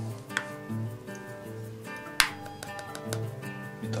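Background music with held notes, over which come a couple of sharp clicks, the loudest about two seconds in: a pocket-knife blade prying the back cover off a Lenovo P780 smartphone.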